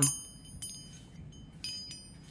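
Hanging metal medallions and amulets clinking against each other as they are handled, each knock leaving a high, fading ring. The strongest clink is at the very start, with lighter ones about half a second in and again near the end.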